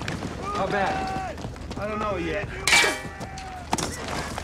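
Battle scene from a war drama's soundtrack: men's raised voices, then one loud blast a little before the three-second mark with a brief ring after it, and a sharp crack near the end.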